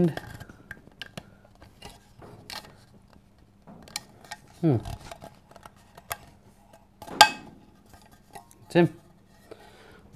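Metal military canteen cup being handled: scattered small metallic clicks and scrapes as its fold-back handle is worked and things are fitted inside it, with one louder clink about seven seconds in.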